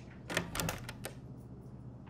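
Door handle and latch clicking as a door is opened: a quick cluster of clicks and knocks in the first second.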